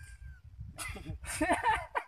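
A person's short, drawn-out whining vocal sound about a second in, over a low rumble of wind on the microphone.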